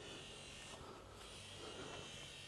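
Near silence: a faint steady electrical hum with light hiss.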